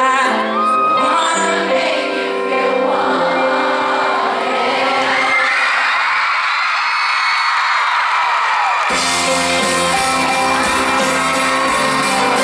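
Live band music from an outdoor stage, with piano, drums and guitars. About two seconds in the bass drops away and a crowd cheers and screams over held notes. About nine seconds in the full band comes back in with drums and bass.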